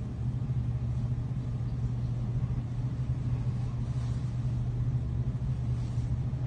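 A steady low drone with a faint hiss over it, unchanging throughout.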